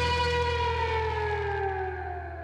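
Electric guitar holding one note and sliding it slowly down in pitch, over a sustained low bass note, the sound gradually fading.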